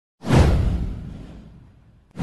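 A deep, falling whoosh sound effect that swells in suddenly a moment in and fades out over about a second and a half.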